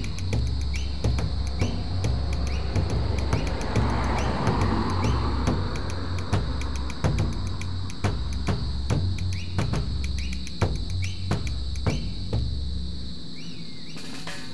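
Background music with a steady beat and bass line; the bass drops out briefly near the end.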